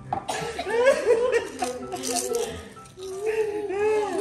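People laughing and chuckling in short bursts, mixed with a little talk.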